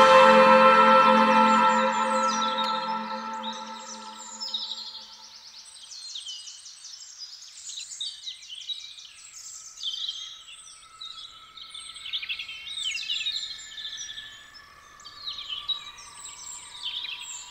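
The last sustained chord of a downtempo track fades out over the first few seconds. It gives way to songbirds chirping and trilling in quick, varied phrases, with a faint steady tone held beneath them later on.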